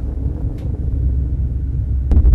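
Low, steady rumble with wind buffeting the microphone, the aftermath of a blast that has just struck a building's rooftop in war footage.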